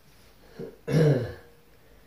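A man clears his throat once, about a second in, preceded by a short faint sound.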